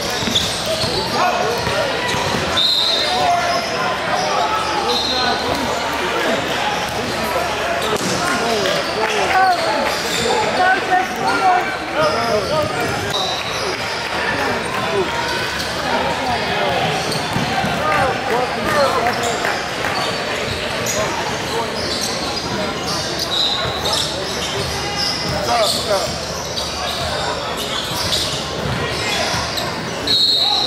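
Basketball game sound in a large gym: a ball bouncing on the hardwood court, with indistinct chatter from the crowd and players all through, and a few brief high squeaks or whistles.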